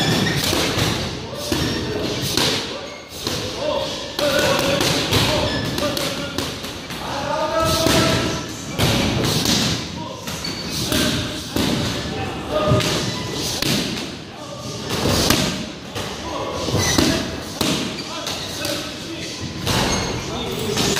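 Gloved punches and kicks landing on Thai pads: a run of sharp thuds and smacks at irregular intervals, with short vocal calls in between.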